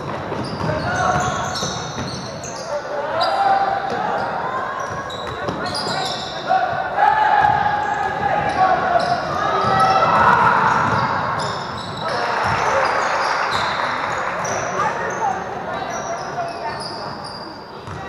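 Basketball game sounds in a large, echoing gym: a ball bouncing on the hardwood, many short high-pitched squeaks of sneakers, and shouts from players and the sideline, with a fuller burst of crowd noise about twelve seconds in.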